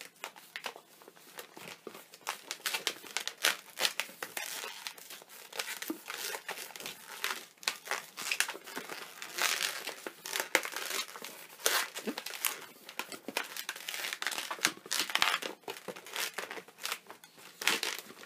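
Latex twisting balloons being handled and twisted into bubbles, the inflated rubber rubbing against itself and the hands in a dense, irregular run of short scratchy squeaks and crinkles.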